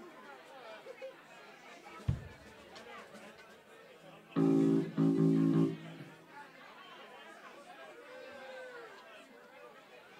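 Audience chatter in a small club, with a single low thump about two seconds in. Then, about halfway through, an instrument on stage sounds two loud, held low notes with a short break between them.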